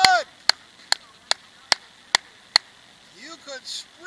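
Six sharp knocks at an even pace, about two and a half a second, with a brief voice at the start and again near the end.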